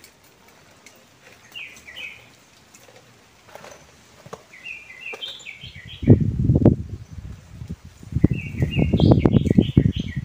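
A small bird chirping in short runs of quick high notes, three times. About six seconds in, loud rough rustling and scraping starts as hands work soil mixed with charcoal, manure and eggshells in a garden bed.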